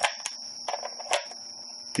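A few light clicks and handling sounds from a Nikkor 50mm f/2 aperture ring being turned on a Nikon EM body, the clearest click about a second in; the ring is catching on the camera's aperture tab near the f/2 mark because its conversion notch is not cut wide enough.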